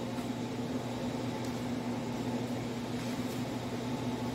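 Steady whooshing of a large floor drum fan running, with a low steady hum underneath and a couple of faint knocks.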